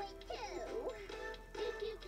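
Children's TV show song: music with a sung melody that slides up and down in pitch over a steady accompaniment.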